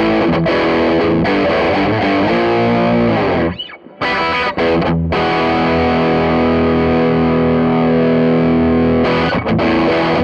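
Les Paul-style electric guitar with Seymour Duncan Pearly Gates humbuckers, played through a Way Huge Green Rhino MkIV overdrive pedal into an amp, with a distorted, overdriven tone. Changing notes and chords stop briefly a few seconds in, then a chord rings out held for about four seconds before the playing moves on.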